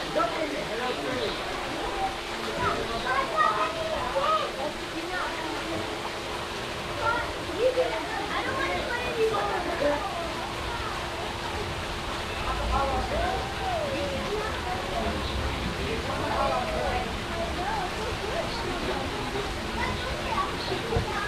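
Indistinct chatter of children and adults, with no clear words, over the steady rush of a rock waterfall pouring into a swimming pool. A faint steady hum sits underneath.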